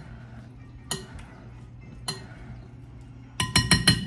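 Spoon clinking against a bowl while stirring fruit salad: a single clink about a second in, another at about two seconds, then a quick run of ringing clinks near the end, the loudest of them.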